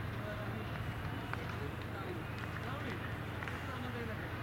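Distant, unintelligible voices of players calling out across the field, over a steady low hum of outdoor noise.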